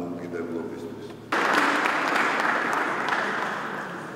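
Audience applause that starts abruptly about a second in and carries on steadily, easing off slightly near the end, after a man's amplified speech briefly at the start.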